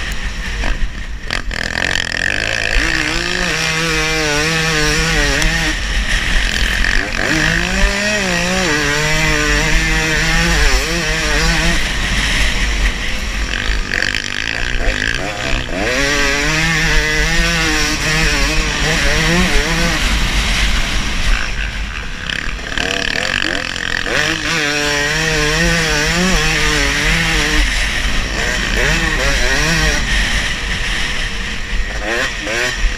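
Dirt bike engine running hard along a motocross track, its pitch wavering and rising and falling in stretches of several seconds as the throttle is worked, with steady wind noise on the camera.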